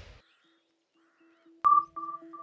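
The tail of a whoosh dies away into silence. Near the end comes a sharp electronic ping that rings and repeats in fading echoes, a logo sting sound effect.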